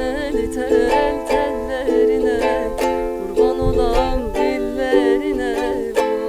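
Ukulele strummed in a steady rhythm, playing an Anatolian folk-song melody. A woman's voice sings along over the first few seconds.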